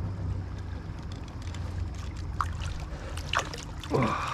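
Shallow river water running and rippling over rocks around a wader's legs, a steady low rush, with a couple of faint knocks and a sharper one just before the end.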